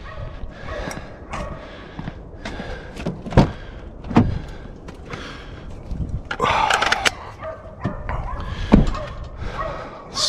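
Van doors being shut and handled: several separate thumps and knocks, the sharpest about three and a half and nine seconds in, with a brief higher-pitched sound about six and a half seconds in.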